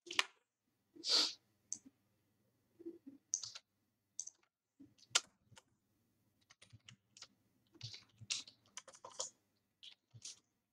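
Computer keyboard typing: irregular key clicks in short runs. A longer, louder rush of noise comes about a second in.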